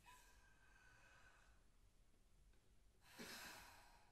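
Near silence on stage, broken about three seconds in by one short, breathy sigh from a performer. A faint ringing note fades out during the first second and a half.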